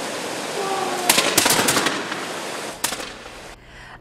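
A ragged volley of flintlock muskets fired by a line of reenactors: several sharp shots close together between about one and two seconds in, then one or two stragglers near three seconds. Under them is the steady rush of water pouring over a dam.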